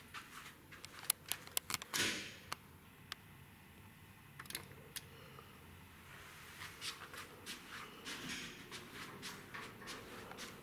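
Quiet room with scattered short clicks and light taps, among them the press of an elevator's DOWN hall-call button.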